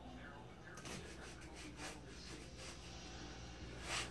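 Soft rustling and scuffing of a small dog mouthing and tugging a plush toy on carpet, with a sharper scuff near the end. No squeak: the toy's squeaker is not working.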